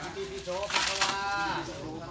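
A man's voice chanting an incantation in a drawn-out, sing-song tone, with a hissed 's' sound about a second in.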